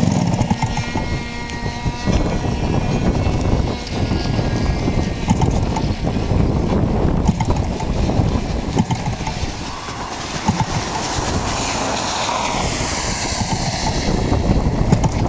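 85 cc gasoline engine of a large RC model aerobatic plane running unevenly at low speed. Its pitch rises over the last few seconds as it is revved up.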